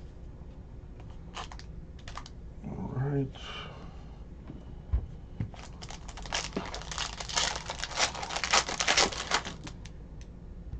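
Foil wrapper of a Donruss basketball card pack being torn open and crinkled: a dense run of sharp crackling from about six seconds in until shortly before the end, after a few separate clicks of cards being handled.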